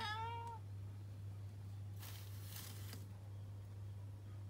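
A tabby cat meows once, a short call of about half a second right at the start. About two seconds in comes a second-long burst of hiss-like rustling noise, over a steady low hum.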